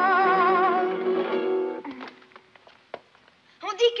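A child's high singing voice ends a sung phrase with wide vibrato, gliding down within the first second. Sustained instrumental accompaniment under it dies away about two seconds in, leaving a few faint clicks.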